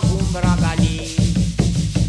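Réunion Creole séga song in a short stretch between sung lines: a steady bass-and-drum pulse with a scraping shaker rhythm and a held melody note.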